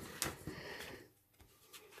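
Soft rustling and rubbing of damp 300 gsm cold press watercolour paper being handled just after tearing, with a light tap about a quarter second in, dying away after about a second.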